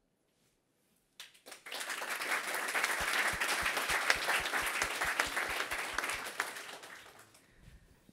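Audience applause that starts about a second in, builds quickly and dies away near the end, with a steady low thump about four times a second in the middle.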